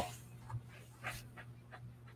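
A few faint, short clicks and soft knocks, about five in two seconds, irregularly spaced, over a low steady hum.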